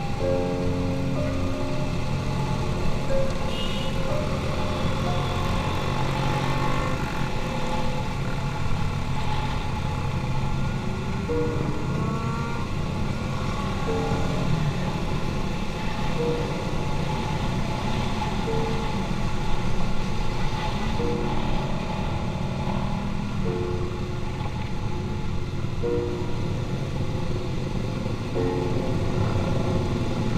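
Steady motorcycle engine and road noise while riding among a group of motorcycles, with music of short repeated notes playing over it.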